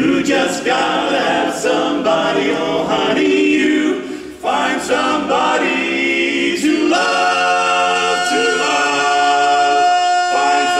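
Barbershop quartet of four men singing a cappella in close harmony; from about seven seconds in they hold one long steady chord.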